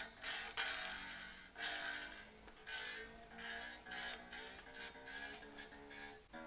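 Quiet, repeated plucks of the freshly fitted low E string on a Fender Mexican Stratocaster, struck every half second to a second while its locking tuner is turned to bring the slack string up to pitch.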